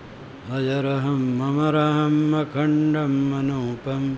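A man's voice chanting a Sanskrit mantra in long held notes on a steady pitch, starting about half a second in, with two short breaks for breath.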